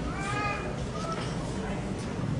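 Background murmur of children and audience voices, with a short high-pitched young voice calling out about a quarter second in, its pitch rising then falling, and a brief second squeak about a second in.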